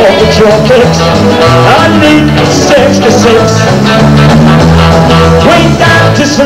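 Live rock-and-roll band playing, with a saxophone carrying a bending melodic line over electric bass, guitar and drums.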